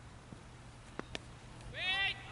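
Cricket ball meeting the bat on delivery: two sharp knocks close together about a second in. A loud, rising shout from a player follows near the end.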